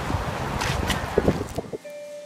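Wind rumbling on a handheld phone microphone with handling noise and a few sharp knocks about a second in. It cuts off abruptly near the end.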